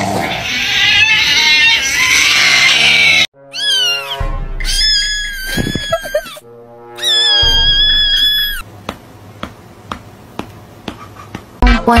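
Music for the first three seconds, cut off suddenly, then a cat meowing in two long, drawn-out calls, the first about four seconds in and the second about seven and a half seconds in. Faint scattered clicks follow.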